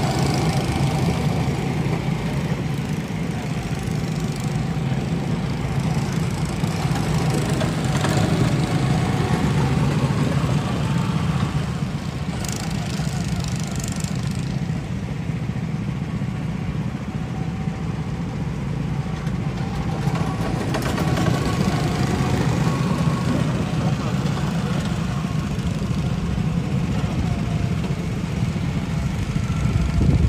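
Go-kart's small gasoline engine running steadily as the kart laps the track, a low drone that swells a little twice as it comes nearer.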